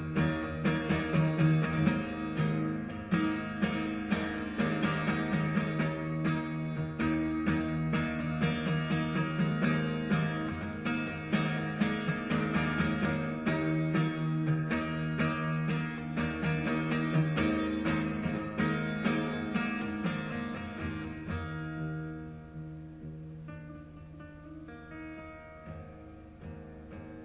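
Acoustic guitar strummed rapidly in an instrumental passage of a live song, with no singing. About 22 s in the playing grows quieter and sparser.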